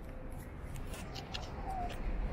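Quiet city street ambience with a few faint, sharp clicks and ticks scattered through it.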